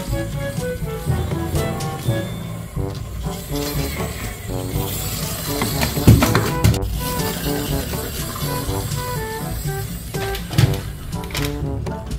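Music: a bright melody of short, clipped notes over a steady low beat, with a sharp knock about six seconds in.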